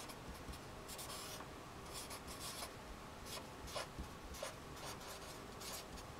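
Felt-tip marker writing on paper: a run of faint, short scratching strokes as letters and symbols are drawn.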